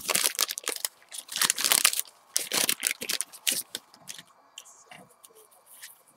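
Trading-card pack wrapper being torn open and crinkled by hand in a series of rustling tears over the first few seconds, followed by fainter handling sounds as the cards are pulled out.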